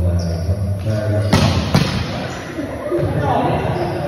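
Voices in a large echoing hall, with two sharp ball impacts about half a second apart a bit over a second in.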